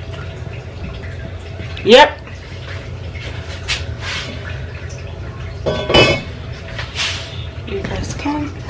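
Lids of heavy casserole pots being handled, giving a few knocks and clinks. The loudest is a ringing clink about six seconds in.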